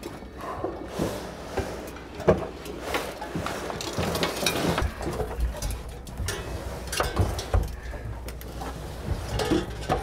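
Irregular knocks, clicks and rustling over a low rumble, with a sharp knock a little over two seconds in.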